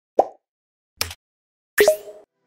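Three short pop sound effects as end-screen buttons pop onto the screen, spaced just under a second apart, the last with a quick rising sweep.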